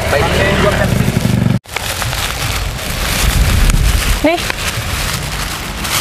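A motorcycle passing close by, its engine running with a low rumble, cut off abruptly about a second and a half in. Then a steady outdoor hiss with low wind rumble on the microphone, with one short spoken word.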